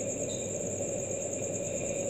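Crickets chirping in a steady high trill over a low background hum.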